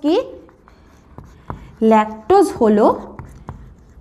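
A marker writing on a whiteboard, with faint scratching and a couple of small taps, between two short stretches of a woman's speech: one at the very start and a longer one in the middle.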